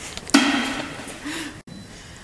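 A woman's voice holding one drawn-out, wordless hesitation sound, starting suddenly and fading over about a second, then cut off abruptly.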